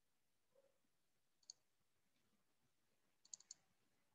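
Near silence broken by a few faint computer mouse clicks: one about a second and a half in, then a quick run of three or four near the end.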